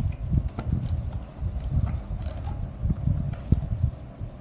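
Cardboard tablet packaging handled on a wooden table: irregular soft knocks and light rustles over a low rumble.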